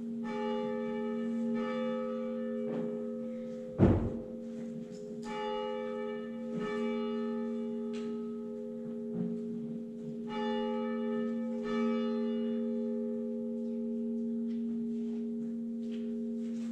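Church bell ringing, with fresh strikes coming in pairs about five seconds apart and a steady hum sustaining between them. A single sharp thump about four seconds in.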